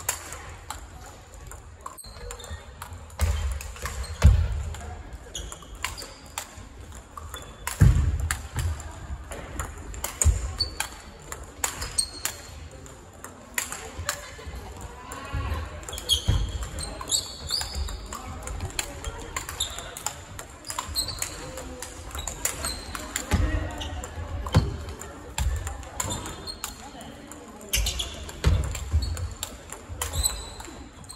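Table tennis rallies with the large 44 mm ball: quick, irregular clicks of the ball off rackets and table, with low thuds of players' footwork. Voices chatter in the background throughout.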